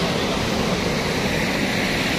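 Cold lahar, a flood of volcanic mud, sand and water, rushing down the channel and pouring over the edge of an embankment: a loud, steady rush.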